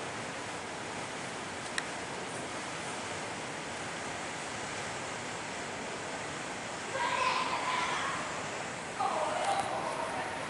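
Airport terminal background noise: a steady, even hiss of the building's air handling and hall noise heard from inside the terminal. Distant voices come in briefly about seven seconds in and again near the end.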